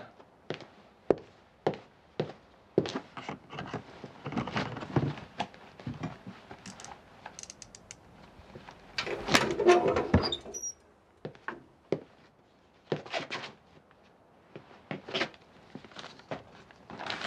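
A heavy bank safe being worked open: a string of separate knocks, clicks and footsteps on a wooden floor, then a longer, louder grating stretch about nine seconds in as the heavy safe door swings open.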